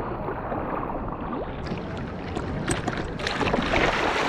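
Water splashing and rushing along a longboard surfboard as it moves through the sea, becoming busier, with sharp splashy crackles, from a little before halfway through.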